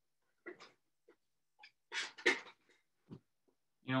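A few short rustles and knocks as a metal avalanche shovel shaft is picked up and handled, the loudest clatter about two seconds in.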